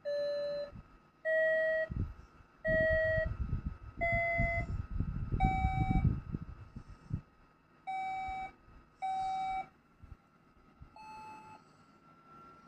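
A series of eight electronic beep notes, one at a time and each about half a second long, with gaps between them. Their pitch mostly steps upward, like a simple electronic melody. Some rumbling, knocking handling noise runs under the notes in the middle.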